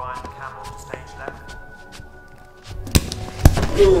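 Quiet music with held notes, then, near the end, a run of sharp, loud knocks and thuds.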